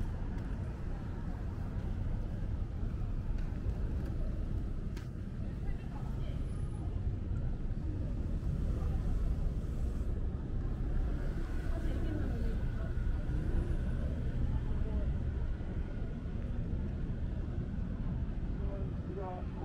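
Outdoor city street ambience heard while walking: a steady low rumble of traffic and street noise, with passersby talking now and then.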